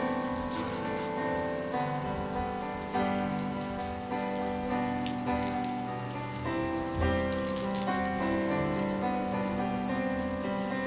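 Electronic keyboard playing slow, sustained chords that change every second or so, with a faint crackle in the high end.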